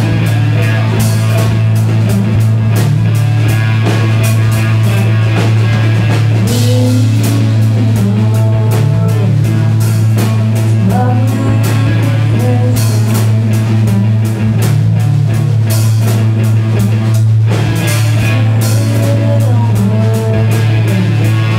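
Live rock band playing: electric guitar, bass guitar and drum kit, with a steady low bass note under frequent drum and cymbal hits. A voice sings over it from about six seconds in until near the end.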